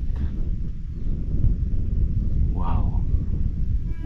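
Wind buffeting the microphone: a steady low rumble, with one short voice-like sound a little under three seconds in.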